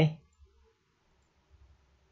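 Faint computer-mouse clicks: a single click about half a second in, then a quick cluster of small clicks near the end, against a quiet room background.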